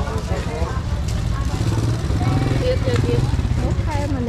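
People talking at a busy market stall over a steady low rumble.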